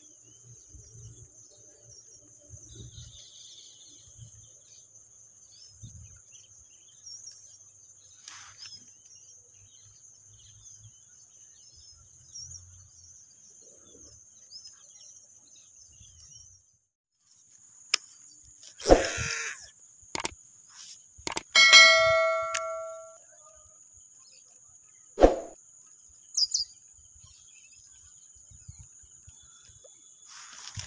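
A steady, high insect drone over outdoor quiet. In the second half come a few sharp knocks and a louder noisy burst, then a metallic ding that rings out for about a second.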